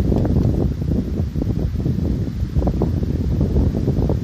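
Wind buffeting the microphone, a heavy uneven low rumble, with a few faint short scrapes of a knife blade on a branch's bark.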